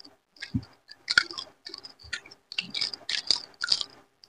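A person chewing a mouthful of rice and fish eaten by hand, very close to the microphone: wet, clicky mouth sounds in quick clusters, thickening toward the end.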